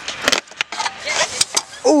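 Stunt scooter dropping in and rolling on skatepark concrete, with a string of sharp clacks and rattles from the wheels and deck.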